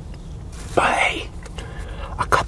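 A man's short, breathy whispered sound about three-quarters of a second in, over a low steady rumble.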